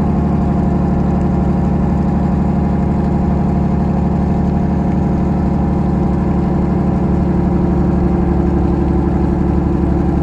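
Boat engine running steadily at a constant low pitch, close and loud.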